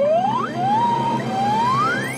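Cartoon sound effect: a whistling tone that glides upward three times in quick succession, the second glide levelling off before the third climbs higher.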